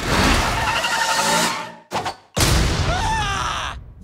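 Loud action sound effects from an animated film trailer: two bursts of noise, each about a second and a half long, cut apart by a sudden near-silent break in the middle.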